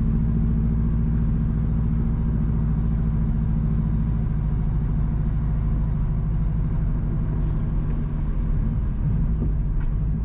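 Car engine and road noise heard from inside the cabin while driving: a steady low hum, its pitch shifting slightly about eight seconds in.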